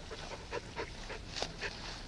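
German Shepherd puppy chewing and tugging at a rubber tire toy: a quick, irregular run of short sounds, several a second.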